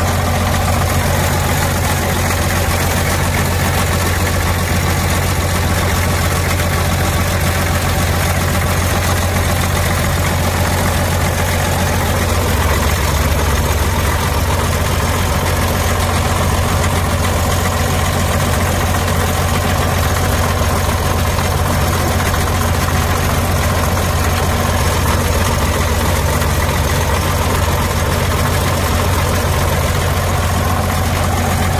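Caterpillar 966C wheel loader's 3306 six-cylinder diesel engine idling steadily, heard up close at the engine compartment as an even, deep hum.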